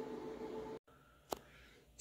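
Near silence: faint room tone that drops out to dead silence a little under a second in, broken by a single short click about a second and a half in.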